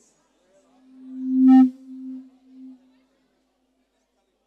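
Low-pitched feedback howl from a PA system: a single steady tone that swells quickly over about a second to a loud, briefly distorted peak, then dies away over the next two seconds.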